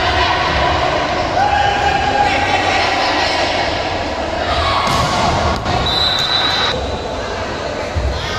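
Volleyball rally in a large indoor hall: the ball struck hard a couple of times past the middle, over steady hall din and players' and spectators' shouts. A short, steady, high whistle blast sounds a little later.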